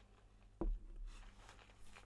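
A whisky nosing glass set down on a wooden tabletop: a single dull thud a little over half a second in.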